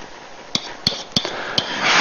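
A stylus pen tip tapping against a hard writing surface as strokes are written. There are four short, sharp clicks about a third of a second apart.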